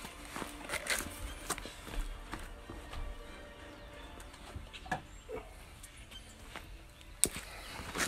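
Cut pieces of thin plastic water bottle being handled and set down on concrete: a few scattered light clicks and taps, the sharpest near the end.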